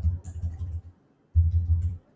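A man's low murmuring voice in two short stretches, with faint computer keyboard clicks.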